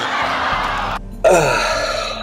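Game-show wrong-answer buzzer sounding with the red X, a harsh buzz that cuts off about a second in. A man laughs near the end.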